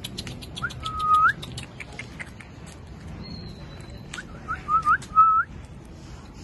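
Short, high human whistles: one longer note that rises at its end about a second in, then a quick run of four or five short rising whistles near the end. A series of sharp clicks runs through the first two seconds.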